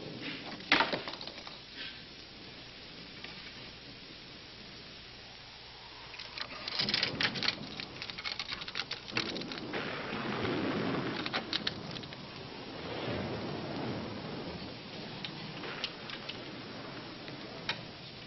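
Film sound effects: a sharp click less than a second in as a gloved hand works a doorknob, then a run of rattling clicks and a swelling, rain-like rumble of noise in the middle, with scattered ticks near the end.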